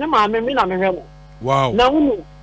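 A person's voice speaking in two phrases with a short pause about a second in, over a steady electrical mains hum.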